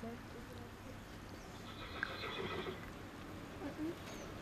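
A horse whinnies once, a high call of about a second that starts about one and a half seconds in.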